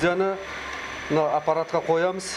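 Speech: a man talking in short phrases, with a steady low hum underneath in the pauses.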